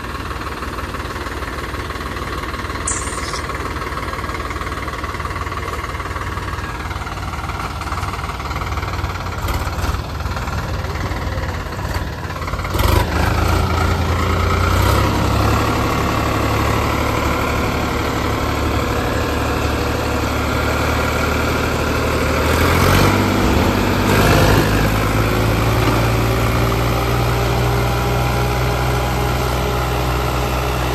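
Sonalika DI 50 three-cylinder diesel tractor engine running steadily. About twelve seconds in it gets louder and rises in pitch as it pulls hard under load against another tractor in a tug-of-war, and the note shifts again about two-thirds of the way through.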